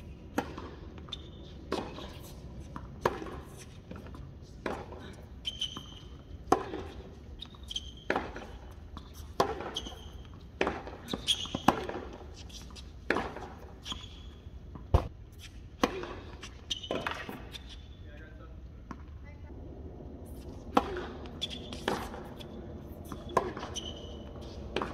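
Tennis balls struck by rackets and bouncing on a hard court in a rally, with sharp hits about every one to one and a half seconds. The hits pause for a few seconds past the middle, then start again.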